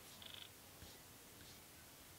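Near silence: room tone, with one faint, brief high-pitched trace about a quarter second in.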